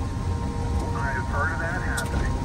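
Low in-cabin rumble of a car driving on a gravel road. A person's voice is briefly heard from about a second in.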